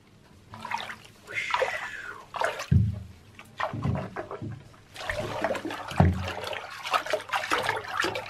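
Bath water being swished and splashed by hand, in irregular surges with several low sloshes, busier in the second half.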